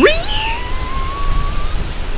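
A voice swooping quickly upward into a long, thin whistling tone that keeps rising slowly and then stops: a vocal sound effect for the wind of a hammer being swung round and round.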